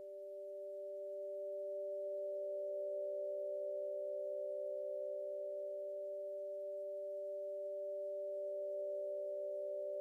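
Steady pure electronic tones held together as one sustained chord, swelling in over the first couple of seconds and then holding: a synth drone opening the song's backing track before the piano and voice come in.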